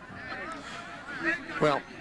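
Faint, distant shouting voices from the field and stands, then a man says "Well" near the end.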